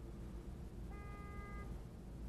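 Low steady rumble heard from inside a car waiting in stationary traffic, with a single brief high beep-like tone about a second in.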